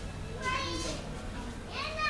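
Faint background voices, high-pitched like children's, with two short calls, about half a second in and near the end, over a low steady hum.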